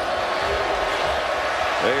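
Steady arena crowd noise during a college basketball game, with low thuds of the ball bouncing on the hardwood court in the first second or so.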